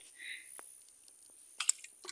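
A small fish released by hand back into pond water: one brief, sharp splash about one and a half seconds in, with a few faint soft ticks before it.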